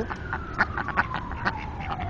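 Ducks quacking in a run of short calls, several a second, with a faint thin tone sliding slowly down in pitch behind them.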